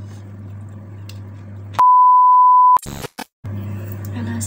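A loud electronic beep of one steady pitch, lasting about a second, inserted in editing where the video cuts. It is followed by a couple of brief crackling bursts and a short dead silence. Before it, a low steady hum under faint room noise.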